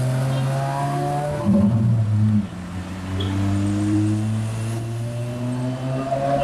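Porsche 718 Cayman GT4's flat-six engine running with its pitch slowly rising as it gathers revs. A louder rev comes about one and a half seconds in and cuts off sharply a second later.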